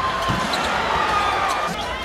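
Basketball arena game sound: steady crowd noise, with a low thud about a third of a second in as a player finishes at the rim.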